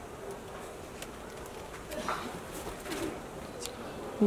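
Quiet shop background with light rustling and faint ticks of cloth as a cotton sari is unfolded and spread out by hand, and a couple of faint brief calls or voices in the distance about halfway through.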